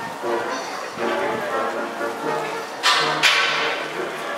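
Brass band playing, with two sudden loud crashes about three seconds in.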